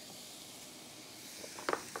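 Ribeye steak sizzling in hot oil in a preheated frying pan: a steady, even hiss, with a few short clicks near the end.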